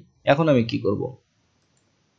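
A man speaking briefly for about a second, along with a computer mouse click as the browser's device toolbar is toggled on; then quiet.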